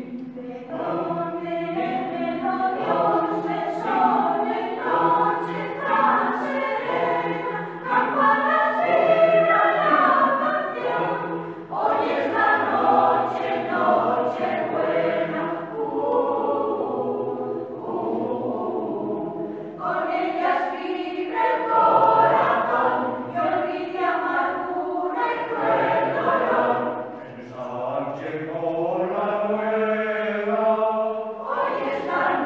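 Mixed choir of men's and women's voices singing a Christmas carol in parts, in sustained, shifting chords, with a short breath pause near the end.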